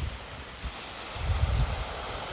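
Wind on an open grassy hillside, a steady hiss with the wind buffeting the microphone in low gusts from about a second in.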